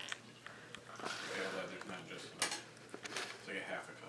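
Coffee poured from a glass carafe into a ceramic mug, a soft steady trickle, followed by a few light clinks of the carafe and mug.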